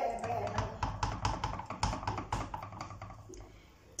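Wet hand patting and pressing soft cornmeal dough flat in a frying pan: a quick run of soft pats, about four or five a second, that fade away near the end.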